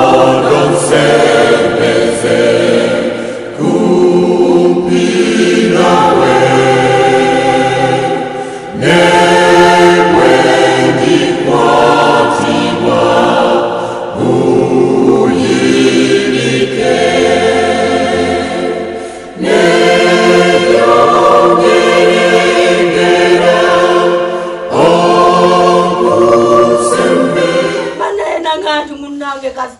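A choir singing a slow hymn in long, held phrases of about five seconds each.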